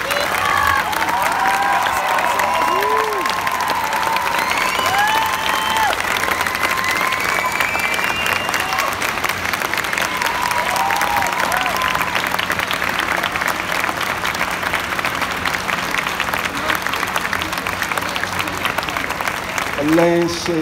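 Large audience applauding steadily, with scattered voices calling out over the clapping.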